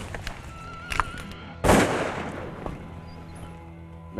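A single shotgun shot about a second and a half in, its report fading out over roughly a second.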